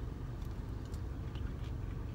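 Steady low hum of a car cabin, with a few faint clicks of a person chewing a sweetened dried orange slice.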